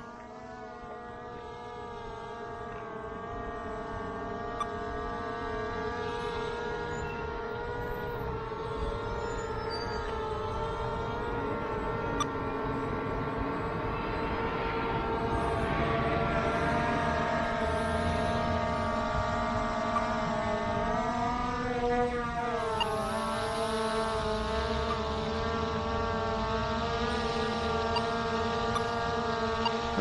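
Skydio 2 quadcopter's propellers whining in flight: a steady, multi-toned hum that grows gradually louder, with a brief dip and rise in pitch about three-quarters of the way through as the rotors change speed.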